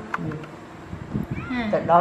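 A high-pitched voice rising and then falling in pitch in the second half, after a quieter stretch with a faint click near the start.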